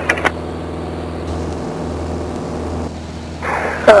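Steady low drone of the Beechcraft Sundowner's single four-cylinder piston engine and propeller, heard inside the cabin. A hiss rises briefly just before the end.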